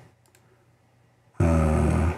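Two faint, quick computer mouse clicks in a quiet room, then a man's voice starts about one and a half seconds in.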